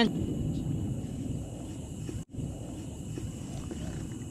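Low, steady rumbling noise with faint clicks and drips as a gill net is hauled by hand over the side of a small boat. It cuts out for an instant about halfway through.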